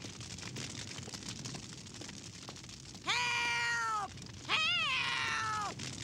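An elderly woman's voice crying out twice, two long, drawn-out, high-pitched calls for help from inside a house that is on fire.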